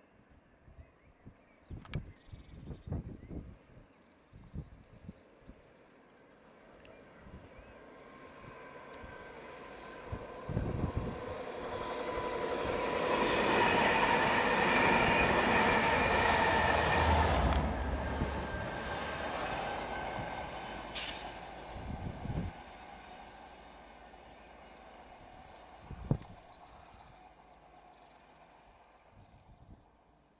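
Class 67 diesel locomotive 67 012 and its coaches passing on the main line: the engine and wheel-on-rail noise build to a peak in the middle, then fade slowly as the train runs away. A few sharp knocks come in the first few seconds.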